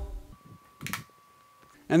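One short, soft knock about a second in: a tool holder set down into a wooden tool block. A faint thin steady tone sits behind it.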